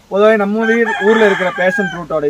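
A rooster crowing once, loud and close: one long crow lasting nearly two seconds.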